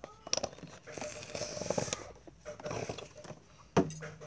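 Plastic squeeze bottle of body wash being squeezed, gel and air coming out of the nozzle in a few short hissing, squelching spurts, then a sharp click near the end as the bottle is put down or capped.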